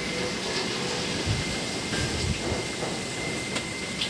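Steady tropical-storm rain hissing down on garden foliage and ground, with a few brief low rumbles in the middle.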